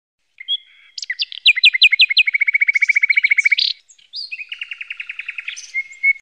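Songbird singing two phrases. The first is a short whistle, a run of falling notes, then a fast even trill ending in a sharp note. After a brief pause comes a second, softer rapid trill.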